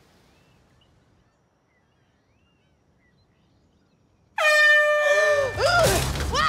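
About four seconds in, an air horn blasts suddenly and loudly for about half a second, a wake-up prank on a sleeper. Right after it, a woman yells in startled cries that rise and fall in pitch.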